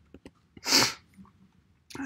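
A single short, hissy sneeze from a person, about a second in, sounding stifled.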